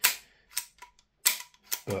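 The removed trigger pack of a VFC MP5K gas blowback airsoft SMG being worked by hand, its trigger and hammer snapping in a series of sharp, irregularly spaced clicks. The loudest click comes at the start and another about a second and a quarter in.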